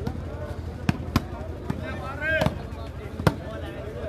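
Sharp slaps of hands striking a volleyball during a rally, four hits, with a player's shout near the middle over steady background crowd noise.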